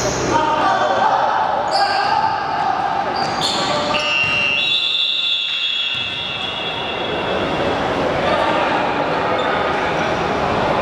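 Basketball game on a hardwood gym floor in a large hall: the ball bouncing, sneakers squeaking and players calling out. About four seconds in, a referee's whistle sounds as one long steady blast lasting about two seconds.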